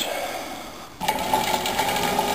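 A DC permanent-magnet motor used as a bicycle generator, wired straight to a 12 V battery with no blocking diode, starts up about a second in and runs on its own with a steady whine, turning the V-belt and bike wheel. The battery is driving current backwards into the generator and draining.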